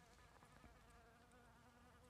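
Faint, steady buzz of a bee in flight.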